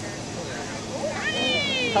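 A child's high-pitched shout from the football field: one drawn-out call that rises and then falls gently, starting about a second in.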